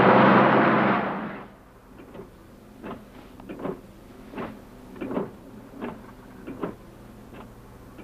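Sound inside a moving car: a steady low engine and road hum. It opens with a loud rushing noise that fades out about a second and a half in. After that come soft, regular knocks about every three-quarters of a second.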